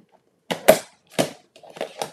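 A handful of sharp clicks and knocks as stamping supplies, such as a plastic ink pad case, are picked up and set down on a desk. The loudest comes under a second in.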